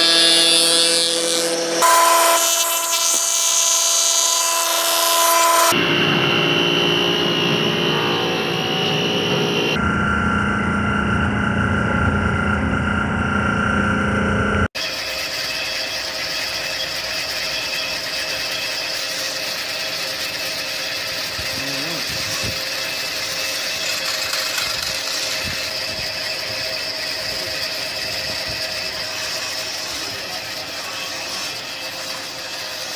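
Woodworking machinery running with a steady hum, the sound switching abruptly every few seconds. After an abrupt break about halfway through, a slightly quieter steady machine hum continues with a few faint knocks.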